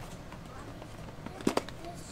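Baby bottle being pushed into a diaper bag's insulated bottle pocket: faint handling rustle, with two sharp clicks close together about one and a half seconds in.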